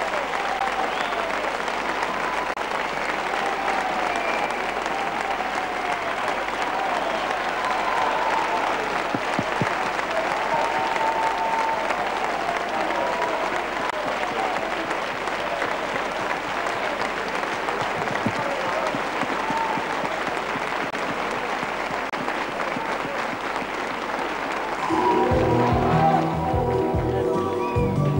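A large studio audience applauding steadily and without a break; about a second before the end a band strikes up.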